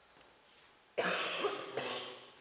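A person coughing indoors: a sudden loud cough about a second in, followed right after by a second, shorter one.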